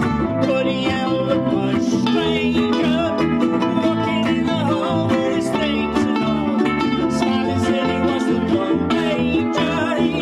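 A ukulele group playing a song live: many ukuleles strummed together, with a fiddle among them, keeping a steady beat.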